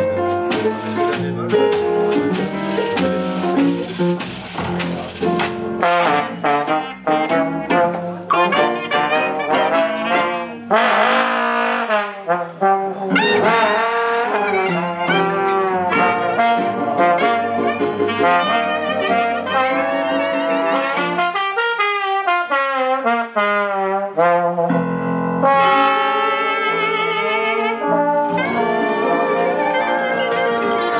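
Live traditional jazz band: piano with the clicking rhythm of a washboard for about the first ten seconds. Clarinets and trombones then come in together over double bass, with falling slides a little past the middle.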